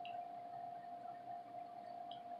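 Quiet room tone with a faint, steady, unwavering tone humming throughout.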